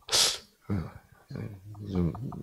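A short, sharp hiss of breath from a man into a handheld microphone at the very start, followed by brief low murmured speech.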